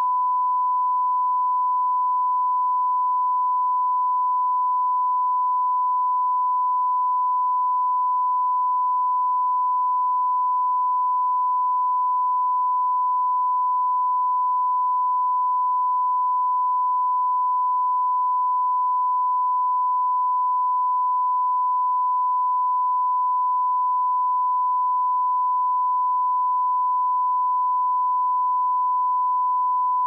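Steady 1 kHz line-up test tone sounded with broadcast colour bars: a single unbroken pitch at a constant level, the reference signal for setting audio levels before the transmission begins.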